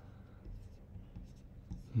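Faint scratchy rubbing of a computer mouse being slid across the desk.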